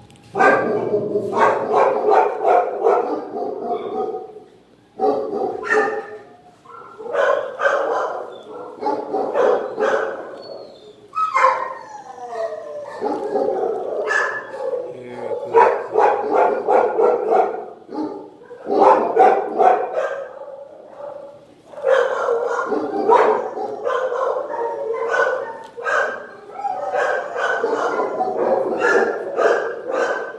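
Dogs barking almost without pause in a shelter kennel block, many barks overlapping, with brief lulls.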